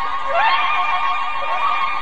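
Animated piglets squealing in short rising squeals, the loudest about half a second in and smaller ones later, over background music with held notes.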